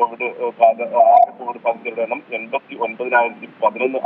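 A man speaking Malayalam in continuous news-report speech, his voice thin and narrow like a telephone line.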